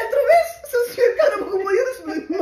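A woman speaking Cape Verdean Creole in a high, gliding voice, telling a story with exaggerated expression.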